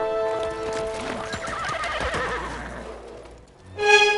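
A horse whinnying, a wavering call that falls away, with hooves clopping, between stretches of music that fades out early on and comes back loudly near the end.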